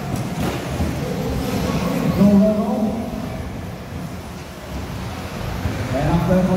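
Radio-controlled 2WD racing buggies running round the track, their motors and tyres heard together with people's voices.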